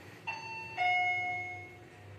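Fujitec elevator arrival chime: a two-note electronic ding-dong, a higher tone then a lower, louder one, each ringing out and fading, signalling that the car has reached the floor.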